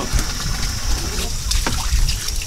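Water running steadily from a hose onto a fish-cleaning table, over a constant low rumble, with a single sharp click near the end.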